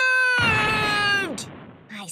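A boy's cartoon voice holding out the last drawn-out syllable of a shouted spell, its pitch sagging before it ends about one and a half seconds in. A rushing noise comes in sharply about half a second in and fades away just before the next line.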